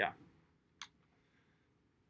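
Near silence with a single short click about a second in.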